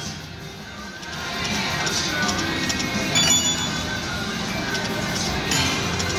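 Lucky Honeycomb video slot machine playing its game music and bell-like chimes while the reels spin, softer for the first second, with a cluster of high chimes about three seconds in.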